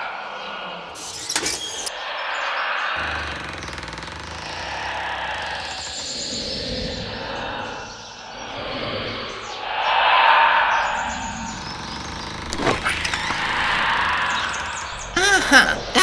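Gusting wind: a rushing noise that swells and fades several times.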